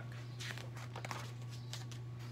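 Paper pages of a paperback picture book being turned: a few soft, short rustles and clicks, over a steady low hum.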